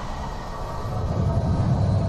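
Rumbling logo-reveal sound effect, a deep noisy swell that grows slowly louder.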